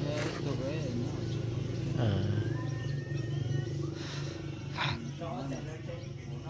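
A motor vehicle engine idling with a steady low hum, under men talking.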